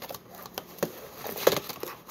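Hard plastic toy capsule being handled and twisted, giving a string of small clicks and knocks with light rustling, the loudest knock about one and a half seconds in.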